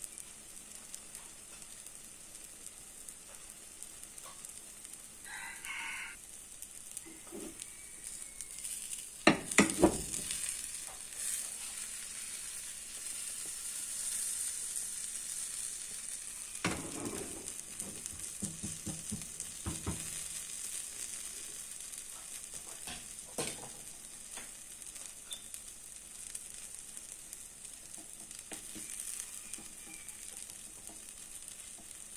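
Sweet potato and apple pie batter sizzling softly in a frying pan. A sharp clatter comes about ten seconds in, the loudest sound, and a few scattered knocks follow as the pan is handled.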